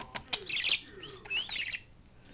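Pet budgerigar chattering: a few sharp clicks at the start, then quick chirps and warbling notes that slide up and down in pitch.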